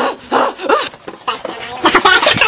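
A woman's voice close to the microphone making a string of short, high, whiny vocal noises rather than words, with the loudest cluster near the end.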